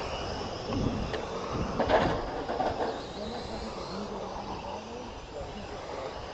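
Small electric RC touring cars running on an asphalt track, their motors whining and sweeping up and down in pitch as they pass, loudest about two seconds in.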